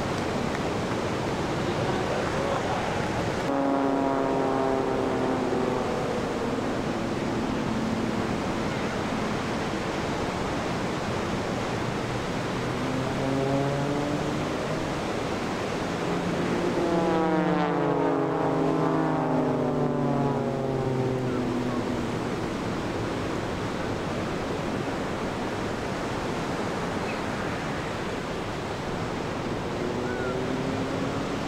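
Breaking surf and white water washing steadily. Three times, a long horn-like tone with several overtones sounds over it and slowly falls in pitch: about four seconds in, around thirteen seconds, and longest from about seventeen to twenty-one seconds.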